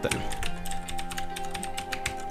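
Rapid clicking of typing on a computer keyboard, over background music with long held notes.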